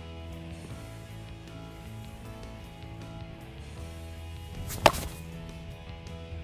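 A baseball bat striking a ball off a batting tee: a single sharp crack a little under five seconds in, over background music.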